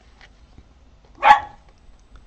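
A pet dog barks once, loudly and sharply, about a second in. The dog has been shut out of the room and keeps wanting attention.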